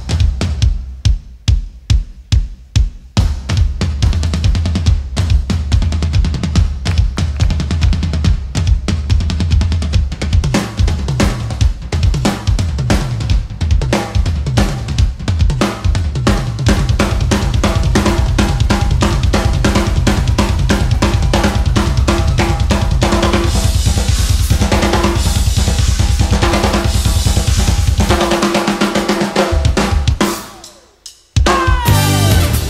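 Live drum solo on a full drum kit with bass drum, snare, toms and cymbals. It opens with loud single hits about two a second, then builds into fast, dense playing.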